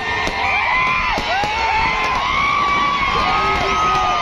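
A large crowd cheering and shouting, a loud, steady mass of many overlapping voices calling out at once.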